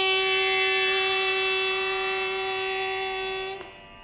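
A girl's voice singing Carnatic vocal, holding one long steady note that fades slightly and stops about three and a half seconds in.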